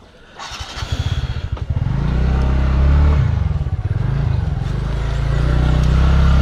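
Motor scooter engine starting about half a second in and pulling away, its pitch rising and falling as it speeds up and eases off, with wind noise on the helmet-mounted microphone.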